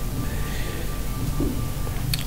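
A steady low rumble with a faint hiss over it and a thin, steady high tone.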